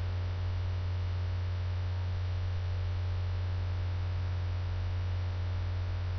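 Steady low electrical mains hum with a faint even hiss, unchanging throughout.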